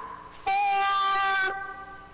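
A man shouting the golfer's warning 'Fore!' as one long, high-pitched yell held for about a second, starting about half a second in.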